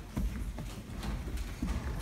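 Scattered knocks and thuds, a few a second, as large cardboard stage pieces are lifted, bent and folded.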